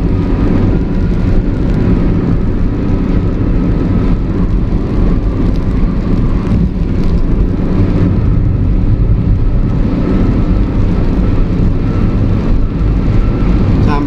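Steady, loud vehicle noise heard from inside a moving vehicle at highway speed: engine hum and road rumble running unbroken.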